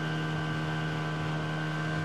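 Motorboat engine running steadily at speed, with the hull rushing through the water.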